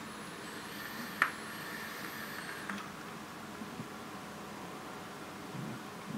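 A draw on an e-cigarette: for about two and a half seconds a faint, thin, high wavering whistle of air pulled through the atomizer, with one short click about a second in. After that only a low, steady hiss.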